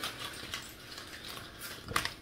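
A man breathing hard while recovering after an exercise set taken to failure, with a short click near the end.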